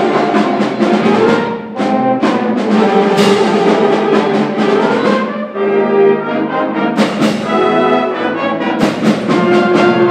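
High school concert band playing, with brass carrying the music. Hand-held crash cymbals and a snare drum add sharp strikes every second or so.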